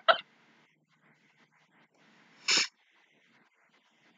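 A woman's laughter tailing off, then about two and a half seconds in a single short, sharp burst of breath through the nose or mouth.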